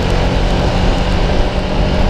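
Sport motorcycle engine running at steady cruising revs, picked up on a bike-mounted action camera, under a steady rush of wind and road noise from the wet road.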